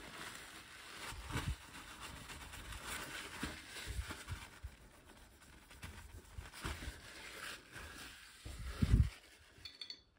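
Cloth rubbing over a ceramic basin around the empty tap holes: faint wiping with a few light clicks and taps, and a louder knock near the end.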